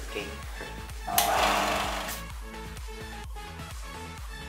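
Background electronic music with a steady beat. About a second in, a loud rasping hiss lasts about a second: a wooden block pressed against the running belt sander's abrasive belt.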